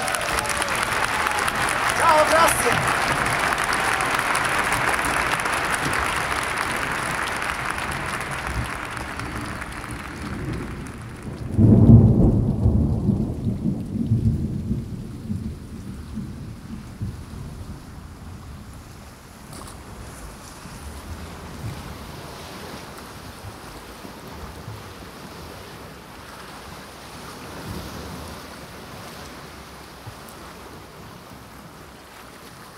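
Binaurally recorded thunderstorm: a steady hiss of rain that slowly fades, then a sudden clap of thunder about twelve seconds in that rumbles away over several seconds, leaving quieter rain.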